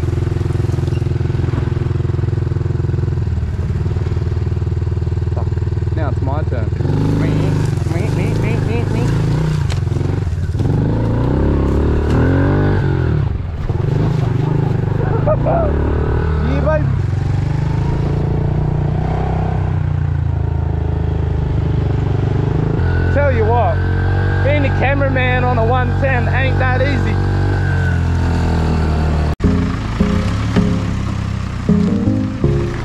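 Small dirt bike engine running on a rough track, its pitch stepping up and down as it is ridden, with voices over it in two stretches.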